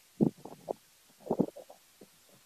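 A man's voice murmuring softly, with two brief low clusters of sound, one just after the start and one around the middle, much quieter than his speech on either side.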